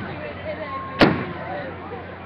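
Aerial firework shell bursting: one sharp, loud bang about a second in, with the fading tail of an earlier bang at the start, over the chatter of a crowd.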